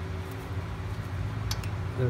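Steady low background hum, with two brief clicks about one and a half seconds in as a hand fits the brake caliper's guide pin bolts.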